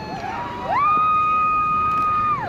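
A spectator's long high-pitched cheer: one held note that slides up about half a second in and stays level for the rest of the time, over faint crowd voices.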